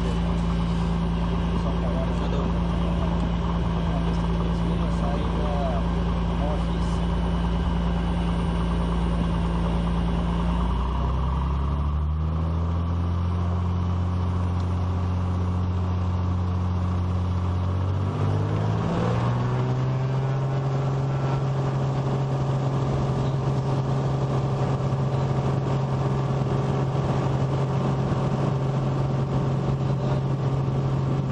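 Piper PA-32 Cherokee Six's six-cylinder piston engine and propeller heard from inside the cockpit, running steadily. Its pitch shifts twice, settling on a new steady note a little past the middle as power comes on for the takeoff roll.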